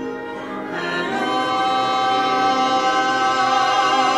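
A man and a woman singing a duet in a stage musical, holding a long note with vibrato that swells from about a second in.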